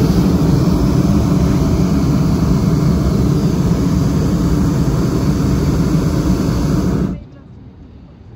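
Hot-air balloon propane burner firing in one long, loud, steady blast that cuts off suddenly about seven seconds in.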